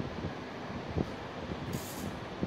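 Handling noise on a handheld phone's microphone: soft rustling and a few light knocks over a steady hiss, with one firmer knock about a second in and a short burst of high hiss near the end.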